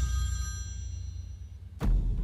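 Mobile phone ringtone with high bell-like tones that fade away during the first second, over a low rumbling drone, with a sharp hit near the end.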